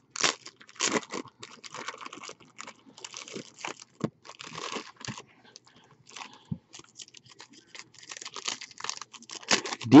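Plastic wrapping on a trading-card box and then a foil card pack being torn open and crinkled, an irregular run of crackles and tears.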